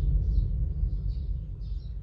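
A deep rumbling boom, the sound effect behind a 'next episode' title card, fading slowly away. Birds chirp over it, higher up and repeatedly.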